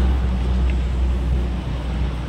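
Steady low rumble of road-vehicle traffic, with a faint hiss over it.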